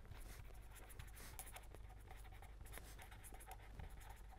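Faint scratching of a pen writing on paper in many quick short strokes, over a low steady hum.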